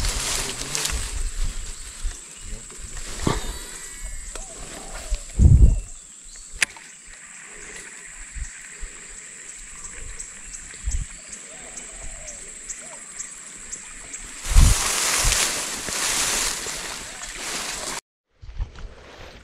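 Fishing lure cast and worked on a creek, splashing on the water, with a low thump about five and a half seconds in. A run of light, even ticks follows in the middle, and a louder rush of noise comes near the end.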